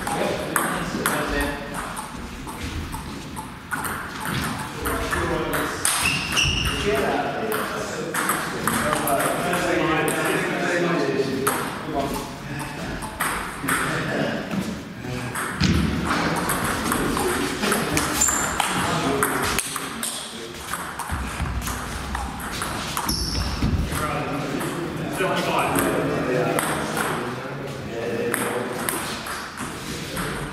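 Celluloid-style table tennis ball clicking off rubber bats and the table during rallies, sharp ticks coming in runs with short gaps between points, over people talking in a large hall.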